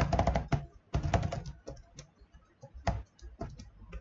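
Typing on a computer keyboard: a quick run of key clicks at the start and another about a second in, then scattered single keystrokes with short pauses between.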